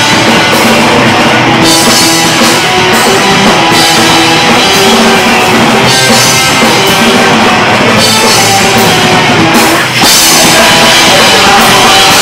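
Punk rock band playing live, an instrumental passage of electric guitars and drum kit with no vocals. There is a momentary break about ten seconds in, then the full band comes back in.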